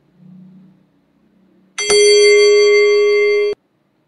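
A loud, steady electronic tone with a bell-like ring and many overtones starts suddenly about two seconds in, holds at an even level for under two seconds and cuts off abruptly.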